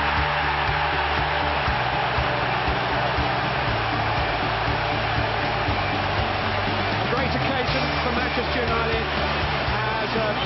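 Stadium football crowd cheering and roaring after a goal, a dense, steady wall of noise, with background music playing underneath.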